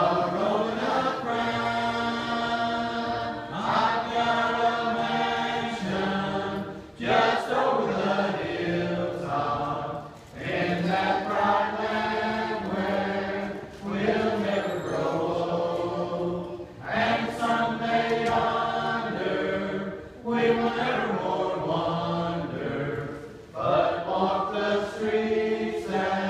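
Church congregation singing a hymn together, many voices holding long notes in phrases of about three and a half seconds, each ending in a brief pause for breath.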